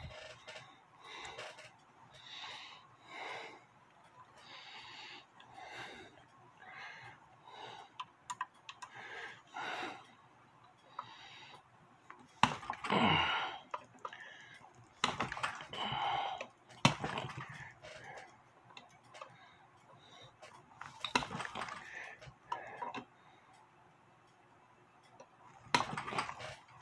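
Pliers working at a stubborn tapered pin in a brass clock movement: irregular small metallic clicks and scrapes, louder around the middle, with breathing from the effort.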